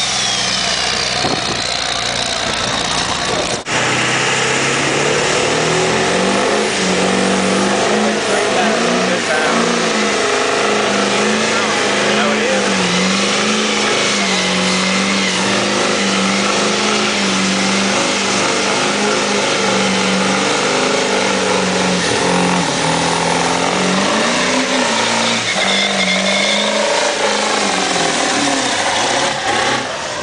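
Ford F-series pickup's V8 diesel doing a burnout: the engine is held at high revs for over twenty seconds, wavering slightly, while the rear tyres spin and squeal on the pavement. Before that, another truck's engine winds down with a falling whine until a sudden cut about three and a half seconds in.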